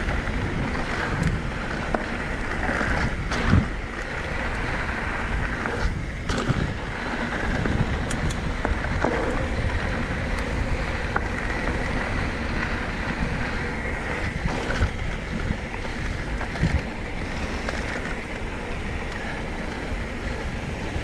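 Wind rushing over the camera microphone as a mountain bike rolls fast down a dirt singletrack, with tyre noise on the dirt and a few sharp knocks and rattles from the bike over bumps.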